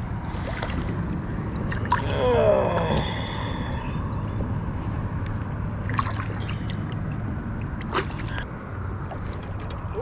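Shallow river water splashing and sloshing as a sauger is released by hand, over a steady low background noise, with a few sharp splashes and a short falling voice-like sound about two seconds in.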